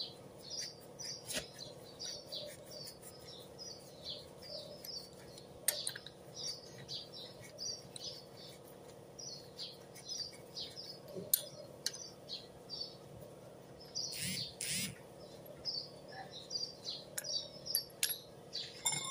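Small birds chirping over and over in short high notes, with two longer, louder calls near the end. A few sharp clicks, the loudest sounds, come from a wrench on the wheel nuts, over a faint steady hum.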